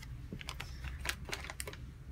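Irregular light clicks and crinkles of a small plastic bag of board-game player pieces being handled and set down into a plastic box insert.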